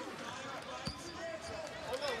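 A basketball bouncing on a hardwood court, a few separate thuds, over the murmur of an arena crowd.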